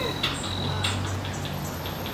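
A rap track playing back for dancing: quick, even hi-hat ticks about six a second over a steady low bass.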